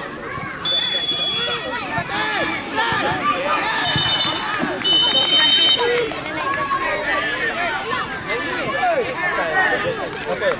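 A referee's whistle blown three times: one blast of about a second near the start, then two more blasts of about a second each back to back about four seconds in. Underneath runs a constant babble of many voices shouting and calling.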